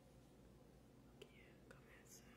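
Near silence: room tone with a faint hum, broken by two faint clicks in the second half.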